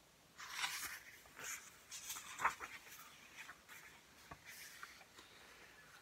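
A page of a hardcover picture book being turned and handled: faint, scattered paper rustles over the first few seconds, the loudest about two and a half seconds in, then a light tick.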